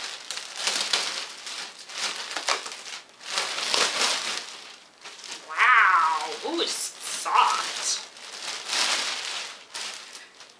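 A thin plastic bag crinkling and rustling in repeated bursts as a large stuffed toy is pulled out of it. A brief high vocal sound falls in pitch about six seconds in.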